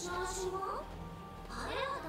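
Anime dialogue: a young girl's high-pitched voice speaking Japanese, rising as in a question, over background music.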